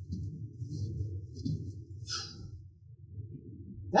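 Cabin road and tyre noise of a Lexus RX450h swerving left and right: a steady low rumble with a few short faint hisses.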